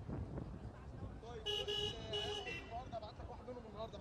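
A vehicle horn sounds two short toots about a second and a half in, over low street noise, followed by faint voices.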